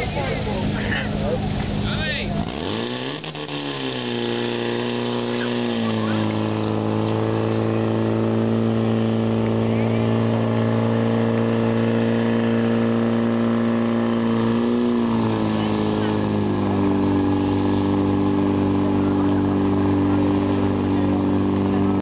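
Portable fire pump engine revving up about three seconds in and then running steadily at high speed as it drives water through the hoses. Its pitch steps down a little about fifteen seconds in. Voices shout over it at first.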